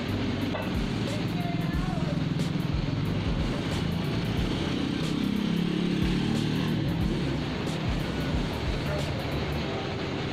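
Street traffic: the engines of passing motor vehicles, with a low engine drone that swells about halfway through.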